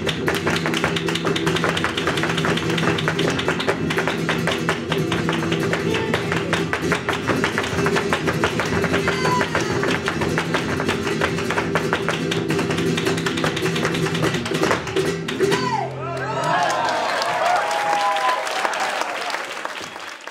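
Flamenco zapateado: rapid heel-and-toe stamping on a wooden stage over strummed flamenco guitars and hand-clapping. About sixteen seconds in the music stops and voices cheer and shout, fading out near the end.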